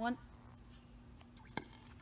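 Small piece of potassium metal reacting in a bucket of water-based red cabbage indicator: two or three sharp, fairly faint pops about a second and a half in.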